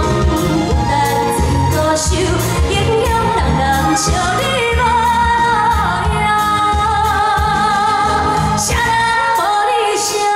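A woman singing a Chinese pop song live into a handheld microphone over a backing track with bass and a steady beat; her long held notes waver with vibrato.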